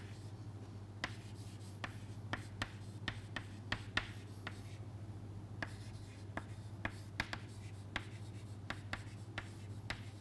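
Chalk writing on a chalkboard: a quick, irregular run of chalk taps and short strokes as letters are formed, thinning briefly about halfway through. A steady low hum runs underneath.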